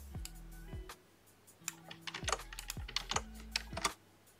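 Typing on a computer keyboard: scattered keystrokes, a short pause about a second in, then several runs of keys as a shell command is entered.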